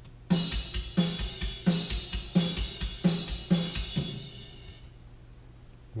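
Playback of a recorded acoustic drum kit from a Pro Tools session, mixed with gate, EQ, compression and reverb. Heavy snare hits land about every two-thirds of a second over kick drum and cymbal wash. The playing stops about four seconds in and the cymbals ring out.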